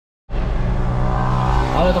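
Steady low engine drone and road noise heard from inside a car moving in traffic, starting about a quarter second in.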